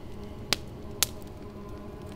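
Wood campfire giving two sharp pops about half a second apart over a faint steady hum.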